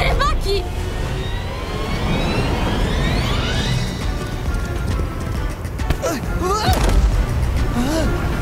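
Cartoon soundtrack: background music over a rumbling, rushing sound effect of a giant wave crashing onto a beach, with rising sweeps in the middle. Short sliding yells from a character come near the end.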